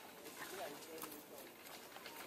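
Faint outdoor background with a few short, faint voices, about half a second in and again near the middle.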